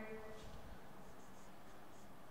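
Marker pen writing on a whiteboard: a few short, faint strokes over a low room hiss.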